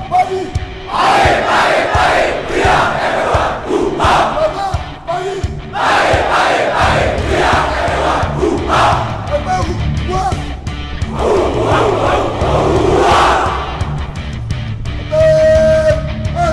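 A large group of voices shouting a chant in unison, in repeated bursts a second or two long, over rock music with a steady beat.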